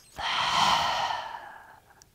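A woman's deliberate deep exhale through the mouth, a breathy sigh that swells quickly and fades away over about a second and a half.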